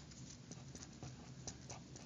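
Faint, irregular short strokes and light taps of a marker writing on paper.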